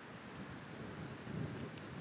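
Faint, even noise of a child's bicycle rolling over a gravel driveway toward the microphone, with outdoor wind noise; it grows a little louder as the bike comes closer.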